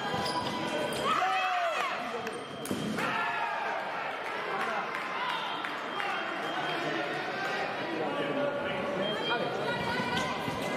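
Fencers' shoes squeaking and thudding on the piste as two sabre fencers step back and forth, with one sharp stamp about three seconds in, over a murmur of voices echoing in a large hall.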